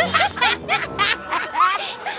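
Laughter in a quick string of short, pitched bursts, about three or four a second, with music playing faintly underneath.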